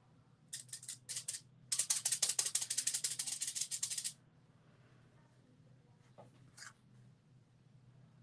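Rapid rattling of something small being shaken: a few short spurts, then a steady run of fast strokes lasting about two and a half seconds. Two faint ticks follow.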